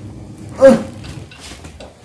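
A single short voiced "uh", falling in pitch, about half a second in. Otherwise only faint room noise.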